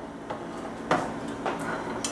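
A metal cooking pot being moved off a gas stove's grate. It gives a light metal knock about a second in and a couple of softer clinks.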